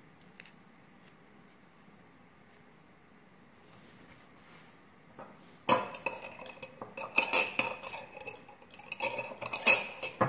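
Near silence for the first half, then from about six seconds in a metal kitchen utensil clattering, clinking and scraping against kitchenware, with short ringing clinks.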